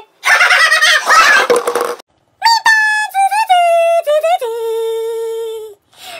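A noisy clattering burst lasting about two seconds, then a long crowing call like a rooster's, held on one note and stepping down in pitch.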